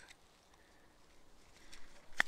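Near silence, then from about halfway in, faint rustling and a few light clicks as a small zippered pouch and a round plastic filter case are handled.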